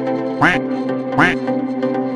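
Two duck quacks, about three quarters of a second apart, over background music with steady held notes.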